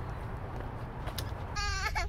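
A short, high, wavering bleat-like cry near the end, over steady background noise.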